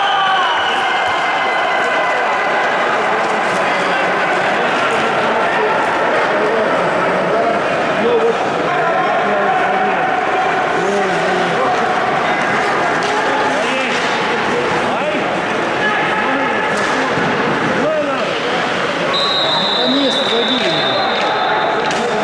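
Bandy match sound on the ice: players shouting to each other over a constant wash of play noise, with occasional sharp stick-and-ball knocks. Near the end a referee's whistle sounds one long steady blast of about two seconds, stopping play.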